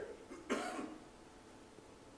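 A single short cough about half a second in, followed by quiet room tone.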